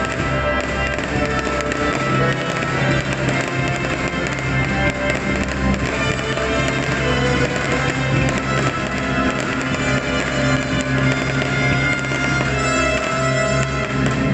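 Orchestral show music over a park sound system, loudest throughout, with fireworks bursting overhead: many sharp pops and crackles scattered over the music.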